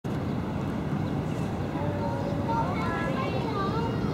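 Steady low rumble of outdoor ambience, with faint voices talking in the distance from about halfway through.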